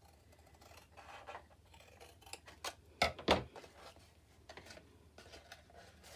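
Scissors cutting through thin cardstock in a few short snips, the loudest about halfway through, trimming away a score line.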